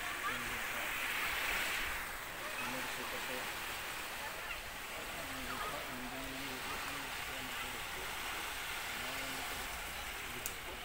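Small waves washing onto a sandy beach, the hiss of the surf dropping about two seconds in, with men's voices talking in the background.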